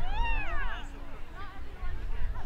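A single high-pitched shout from a person, rising then falling in pitch over most of a second, followed by faint scattered voices.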